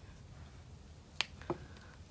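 Two short, light clicks about a third of a second apart, a little past halfway through, over quiet room tone.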